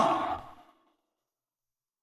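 The tail of a man's spoken question trailing off in the first half second, then dead silence.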